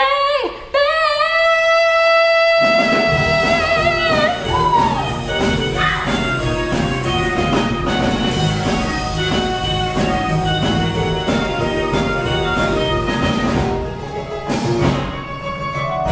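A female singer holds one long final note, and about two and a half seconds in a band enters under it and breaks into up-tempo dance music with brass and drums keeping a steady beat.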